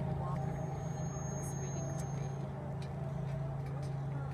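A steady low hum runs throughout, with faint voices in the background.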